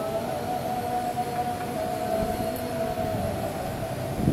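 One long sung note held steady for about three and a half seconds, part of chanted congregational worship singing, over a low jumble of voices.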